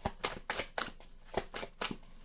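A deck of oracle cards being shuffled by hand, the cards snapping against each other in a string of about six sharp, irregular clicks.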